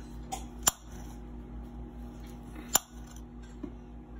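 Kitchen knife slicing baby bella mushrooms on a cutting board, the blade striking the board with two sharp clicks about two seconds apart, over a faint steady hum.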